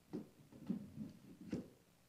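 Faint, irregular knocks and thumps of a color guard's footsteps and flagstaffs on a wooden stage, about four in all, the sharpest about a second and a half in.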